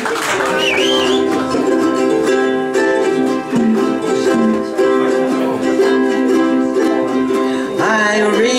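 Several ukuleles strummed together in a steady rhythm, playing a chord sequence with the chords changing every second or so.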